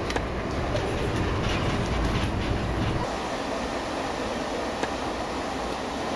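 Muni light-rail car running, heard from inside the car: a steady rumble with some clatter. The deep rumble drops away about halfway through.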